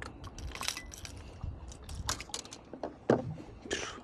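Small metallic clicks and clinks of fishing pliers and a lure's hooks as they are worked out of a bass's mouth, an irregular run of short sharp ticks.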